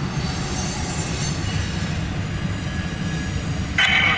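Freight train rolling past, a steady low rumble of the cars going by with a faint, thin high-pitched wheel squeal above it, heard from inside a vehicle's cab.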